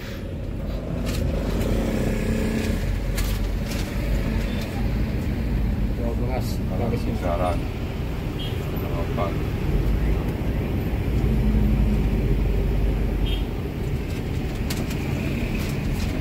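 Intercity bus engine running, heard inside the passenger cabin as a steady low rumble with road and traffic noise.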